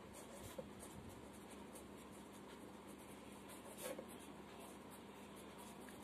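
Faint scratching of a pen writing words on ruled notebook paper.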